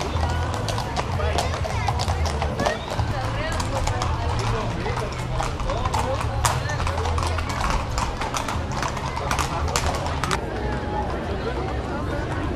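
Several horses' hooves clip-clopping on a paved street, a steady stream of irregular sharp clicks, over crowd chatter and music.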